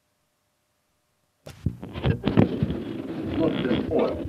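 Near silence with a faint hum, then about one and a half seconds in an old lecture tape recording starts playing: muffled, indistinct voice over tape hiss.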